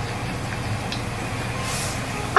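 Frybread dough frying in hot oil in a cast-iron skillet: a steady sizzle, over the low hum of the stove's range-hood fan.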